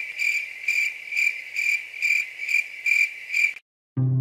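Crickets chirping in a steady, even pulse of about two high chirps a second, cutting off suddenly near the end.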